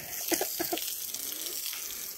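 Water spraying from a hose onto newly laid concrete block walls, a steady hiss of spray striking the blocks. The walls are being wetted while their mortar is still fresh.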